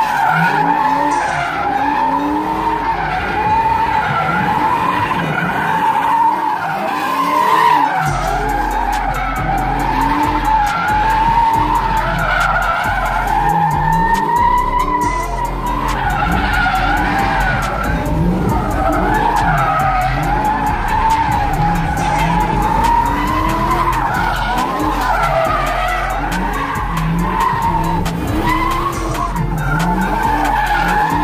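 Fox-body Ford Mustang doing donuts: a continuous tire squeal that wavers up and down in pitch, over the engine revving up and down.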